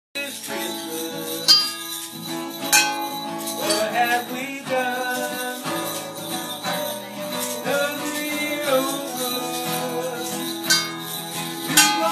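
Acoustic guitar played live, with jingling percussion shaken along in sharp bursts every second or few.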